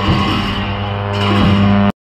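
Tibetan monastic cham music: long horns holding a low, steady drone with a rough haze above it. It cuts off abruptly just before the end.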